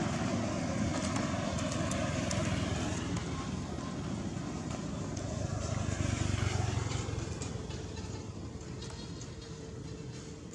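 A motor vehicle's engine running nearby, a low rumble that grows louder about six seconds in and then fades away, like a vehicle passing.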